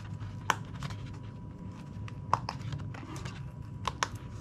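Hands handling a cardboard display box: low rubbing and rustling of card, with three sharp clicks, about half a second in, a little past the middle, and near the end.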